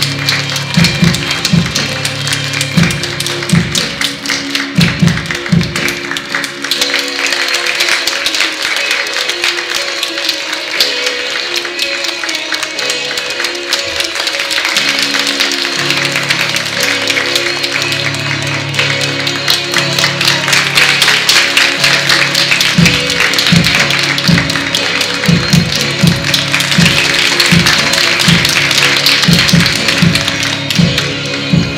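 Applause over recorded music with a low drumbeat. The beat drops out for several seconds in the middle and comes back, and the applause grows louder toward the end.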